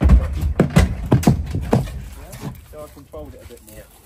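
A horse's hooves knocking as it is brought off a horse trailer: a run of loud, sharp strikes in the first two seconds, fading after.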